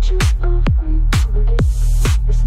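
AI-generated (Suno) melodic techno: a steady four-on-the-floor kick drum about twice a second over a held low bass, with a few short synth notes in the middle range and hi-hat hiss between the kicks.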